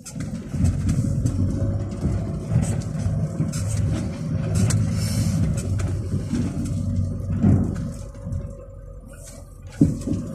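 A vehicle engine running at low speed, heard from inside the cabin, with knocks and rattles as the vehicle works over a rough, rocky track. It eases off for a moment near the end, then one loud thump comes just before the end.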